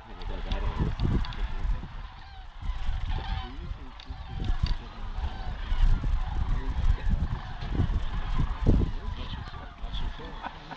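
A large flock of sandhill cranes calling, many overlapping rolling bugle calls at once. A low rumble on the microphone swells and fades under the calls and is often the loudest thing.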